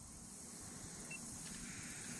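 Faint, steady outdoor background hiss by a pond, with one brief high chirp about a second in.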